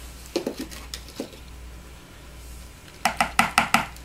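Stick blender, not switched on, being worked by hand through thick soap batter and knocking against the bowl as activated charcoal is mixed in. There are a few light clicks in the first second, then a quick run of about six sharper knocks near the end, each with a short ring.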